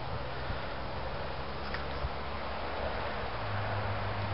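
Steady outdoor background noise beside a road, with a low hum that grows a little stronger near the end.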